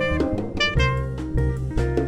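Live jazz group playing: an alto saxophone carries a melody of sustained notes over upright bass, drum kit with cymbal strikes, and acoustic-electric guitar.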